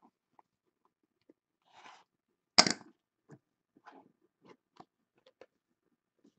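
Small cardboard card box being handled and its lid pulled off, with light crackling and clicking of cardboard and one much louder brief scrape about two and a half seconds in.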